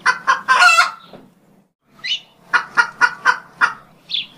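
Chickens clucking: a few loud calls including one drawn-out call in the first second, then after a short pause a quick run of short clucks, about four a second.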